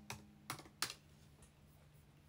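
Typing on a computer keyboard: three clear keystrokes within the first second, then a few fainter ones, over a faint steady low hum.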